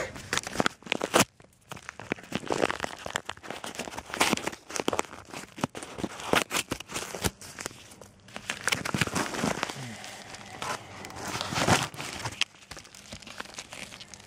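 A paper mailing envelope being torn open and handled: irregular crinkling, rustling and tearing of paper and packaging, with many small sharp crackles.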